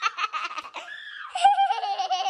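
Hard laughter in quick, choppy bursts, rising about one and a half seconds in to a high-pitched, squealing laugh.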